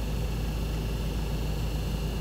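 Steady low rumble of a passenger van's cabin, with no distinct events.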